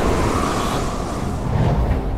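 A steady, loud, low rushing rumble like wind, a sound effect under the hovering flight, with no clear beats or strikes.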